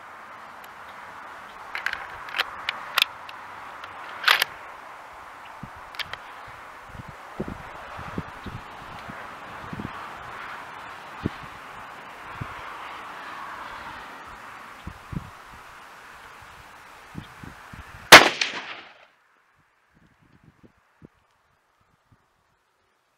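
A few sharp metallic clicks as the bolt-action Savage Model 10 FCP-K is worked and a round is chambered. About 18 seconds in comes a single loud .308 Winchester rifle shot.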